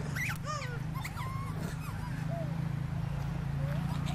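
Infant macaques giving short, rising-and-falling cries, several in quick succession in the first two seconds, then a few fainter ones. A steady low hum runs underneath.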